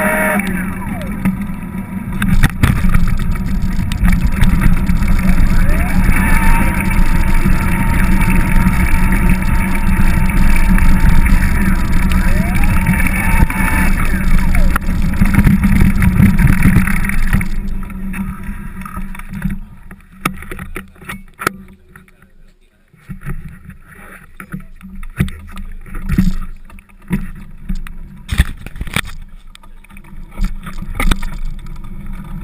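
Wind buffeting a handlebar-mounted action camera's microphone with tyre and road noise while a bicycle is ridden, loud and steady for about eighteen seconds. Then it drops away to a quieter stretch with scattered knocks and rattles of the bike and camera mount.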